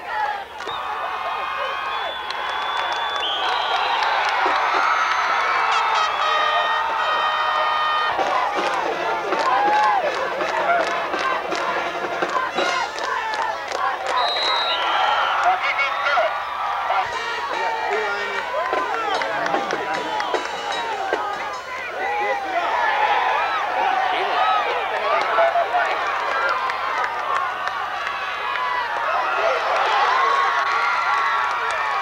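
Football crowd in the stands cheering and shouting, many voices at once. A few steady held tones sound through the first several seconds.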